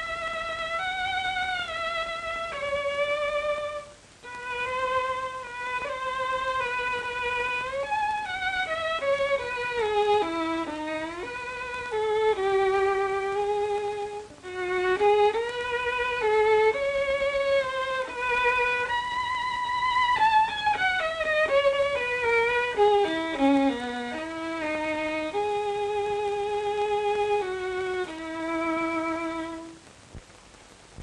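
Unaccompanied solo violin playing a melody, with slides between notes and a few quicker falling runs. It pauses briefly twice and ends just before the close.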